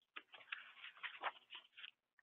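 Faint, quick, irregular clicks and rustles of handling noise in a quiet room.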